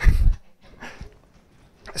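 A short breathy laugh with a low pop on the microphone, then quiet room sound.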